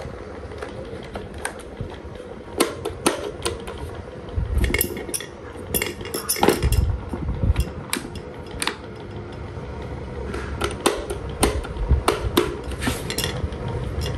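Irregular clicks, clinks and knocks of hard plastic spoons and a thin aluminium disc being handled on a desk fan, over a faint steady hum.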